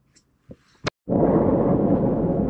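Two short clicks, then about a second in a steady, loud rumble of road and wind noise inside a moving car's cabin starts abruptly.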